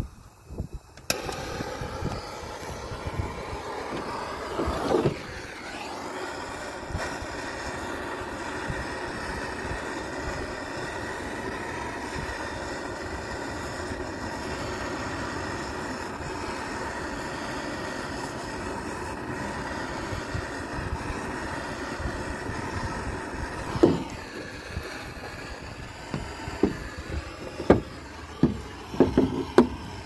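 Handheld gas torch lit suddenly about a second in and burning with a steady hiss, with a brief rising surge around five seconds, as its flame is played over a leather work boot. The flame cuts off abruptly about four seconds before the end, followed by a few light knocks.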